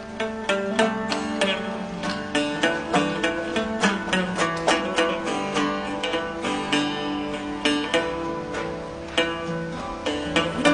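Long-necked fretted lute played by plucking, a quick melody of many sharp notes a second with each note ringing on.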